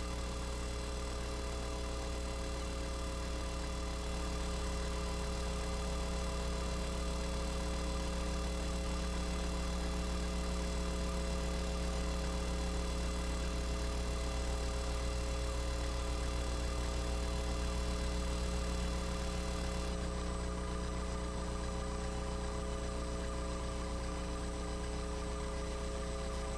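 Steady electrical hum with a buzz of fixed higher tones above it, unchanging throughout. The thin hiss on top drops away at about twenty seconds in.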